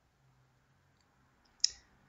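Near silence with one short, sharp click about one and a half seconds in.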